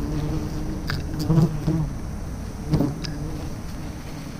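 A mass of wild honeybees buzzing in a steady hum at their nest, stirred up by smoke. A few short, sharp rustles of leaves and twigs come about one second in and again near three seconds.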